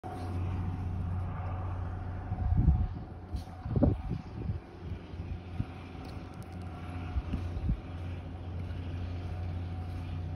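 A steady low hum with a faint higher steady tone, broken by a few dull low thumps about two and a half, four and seven seconds in.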